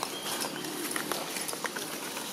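Outdoor woodland ambience: a steady hiss with many small scattered clicks and taps and a few brief high chirps.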